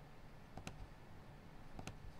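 Two faint computer mouse clicks, about a second apart, over quiet room tone.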